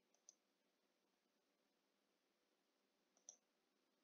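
Near silence with two faint computer mouse clicks, one about a third of a second in and one near the end, as a unit is picked from a dropdown menu.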